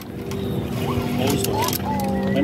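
Steady, chord-like drone of several low pitches from bamboo kite flutes (sáo diều) on flute kites flying overhead, humming in the wind.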